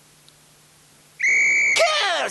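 A single short whistle blast, one steady high note lasting about half a second, sounding a little past halfway through after a second of quiet.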